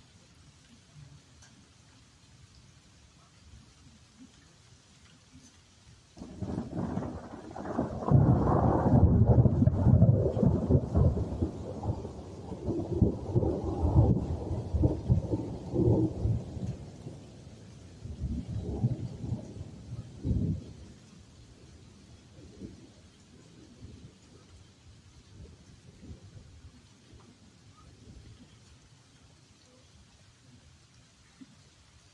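Thunder: a sudden crack about six seconds in opens into a long, loud, rolling rumble. Two more rumbles follow before it dies away about two-thirds of the way through.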